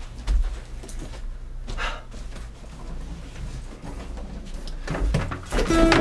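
Scattered knocks and thumps of handling as an acoustic guitar is fetched. Near the end the guitar's strings are knocked and ring out with a sustained pitch.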